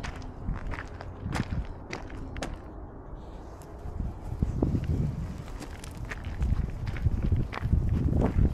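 Footsteps on a gravel path and grass, with irregular clicks of stones underfoot over a steady low rumble.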